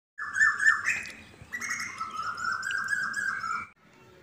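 Birds chirping and tweeting in quick repeated notes, a recorded sound effect that starts suddenly and cuts off sharply just before the end.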